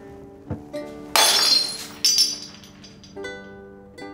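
A glass crashes and shatters about a second in, with high ringing and clinking pieces for nearly a second and a further clink just after, over light plucked-string music.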